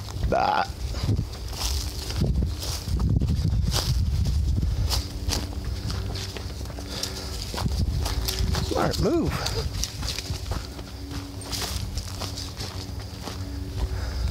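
Footsteps of a person and dogs crunching through dry leaf litter and twigs on a woodland trail, over a steady low rumble of wind and handling on the microphone. A short rising voice-like sound comes about half a second in and a wavering one about nine seconds in.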